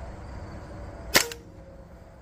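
Hatsan Invader Auto .22 PCP air rifle firing one unsuppressed shot: a single sharp crack about a second in, with a short ring after it.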